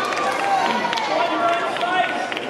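Spectators talking, several voices overlapping.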